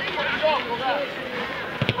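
Players' voices calling and shouting across an outdoor football pitch, with a single sharp knock near the end.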